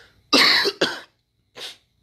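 A man coughing close to the microphone: two sharp coughs in quick succession, then a lighter single cough about a second later.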